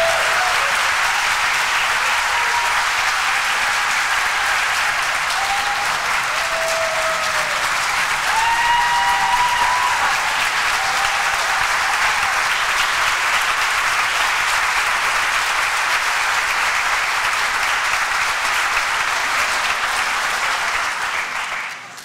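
A large audience applauding steadily, with a few brief voices calling out over the clapping in the first half; the applause dies away near the end.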